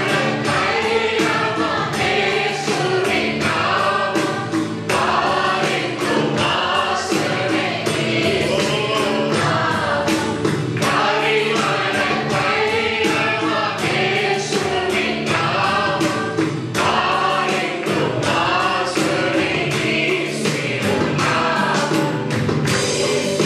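Male voices singing a Christian worship song into microphones, over sustained instrumental backing with a steady beat.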